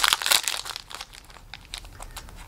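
Foil wrapper of a Magic: The Gathering Jumpstart booster pack crinkling and tearing as fingers pull it open, a pack with no pull tab that is hard to open. The crinkling is loudest in the first second, then thins to faint scattered rustles.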